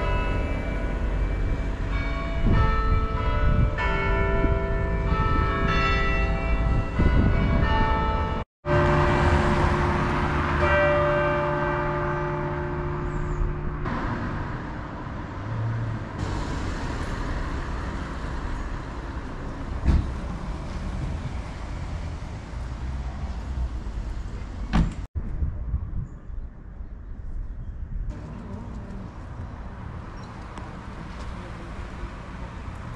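Cathedral carillon bells ringing a tune, many bell tones of different pitches sounding one after another and overlapping as they ring on. After about 14 seconds the bells fade, leaving street noise with passing traffic, broken by two brief silences.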